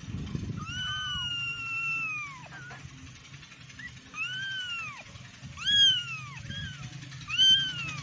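A young kitten meowing repeatedly in high-pitched cries, about five calls. The first is long and drawn out, and the later ones are shorter, each rising and then falling in pitch.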